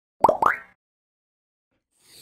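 Animated-logo sound effect: two quick pitched bloops, each rising in pitch, about a quarter second apart.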